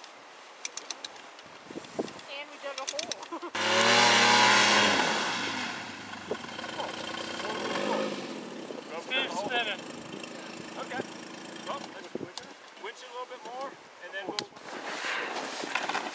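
Snowmobile engine starting suddenly about three and a half seconds in, revving briefly, then dropping back and fading over the next few seconds.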